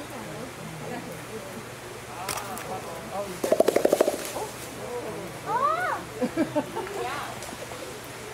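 Western lowland gorilla beating its chest: a quick, even run of about ten hollow beats in under a second, about halfway through.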